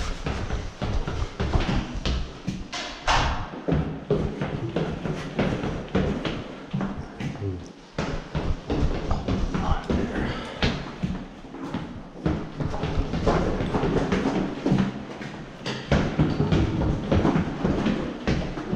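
Close handling noise on an action camera not yet mounted: irregular knocks, bumps and rubbing against the camera body, with muffled voices.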